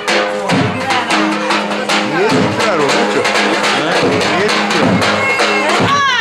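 Live Turkish wedding music: a clarinet playing a winding melody full of pitch bends over a steady drum beat.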